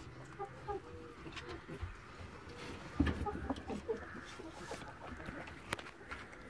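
A German giant rabbit chewing food taken from the hand, with short clucking calls of hens in the background and a single thump about three seconds in.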